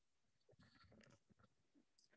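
Near silence, with a few very faint, indistinct sounds about half a second to a second and a half in.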